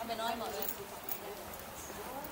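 Nearby people talking briefly. The voices fade after about half a second into outdoor background with a few faint light taps.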